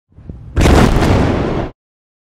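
Explosion-like outro sound effect: a faint rising swell, then a loud noisy boom about half a second in that lasts about a second and cuts off suddenly.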